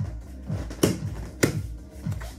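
Background workout music with a steady beat, with two sharp slaps about half a second apart near the middle.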